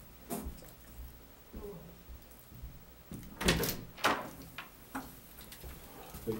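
A door being opened and shut, with latch clicks and knocks. The loudest strokes come between about three and a half and four seconds in, followed by a couple of lighter ticks.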